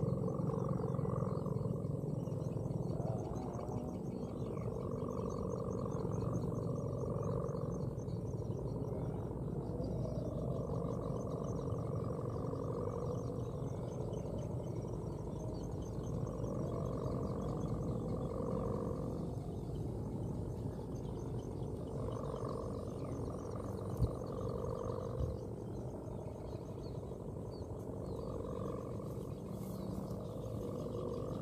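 Kite bow hummer (sendaren) droning in the wind, a pitched hum that swells and fades every few seconds, over wind rumble on the microphone. One short click about 24 seconds in.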